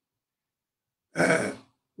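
Silence for about a second, then a man briefly clears his throat once.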